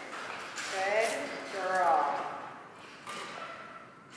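A woman's high, sing-song voice in two short bending phrases, the excited tone of praise for a dog being rewarded. A sharp click follows a little after three seconds in.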